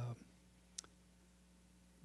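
Near silence in a pause in speech: faint room tone with a steady low hum, broken by one short, sharp click a little under a second in.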